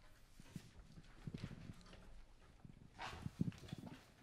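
Faint stage handling noise: scattered soft knocks, clicks and rustling as musicians shift and handle their instruments and gear between pieces, with no music playing.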